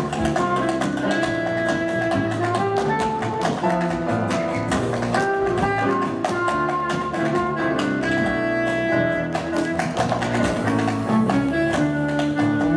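Tap shoes striking the stage in fast rhythmic runs over loud music.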